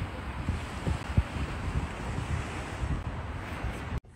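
Small waves washing onto a sandy beach, with wind buffeting the microphone in irregular low gusts.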